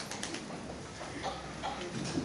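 The last few scattered claps of applause at the very start, then a hushed hall with low, indistinct voices.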